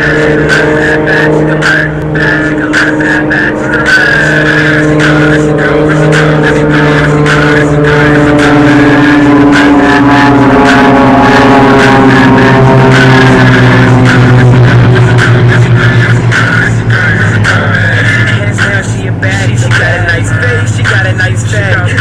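Jet aircraft passing low overhead: a loud, steady drone whose pitch slowly falls, loudest about midway, with a hip-hop song's beat playing underneath.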